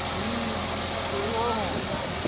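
Massey Ferguson 385 tractor's diesel engine running steadily while pulling a heavily loaded trolley, under enough load that the front wheels lift off the ground near the end. Men's voices call out twice over it.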